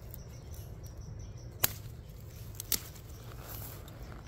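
Two sharp clicks about a second apart, over a low steady outdoor background, while garlic stalks are handled.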